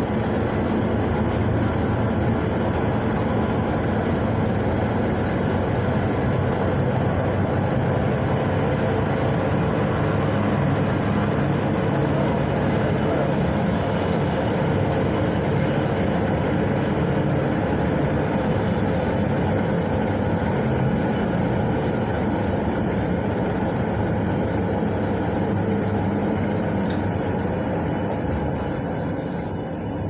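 Interior of a PAZ-32054 bus under way: the ZMZ-5234 V8 petrol engine running with steady road noise through the cabin. Near the end the noise eases slightly and a thin high whine comes in.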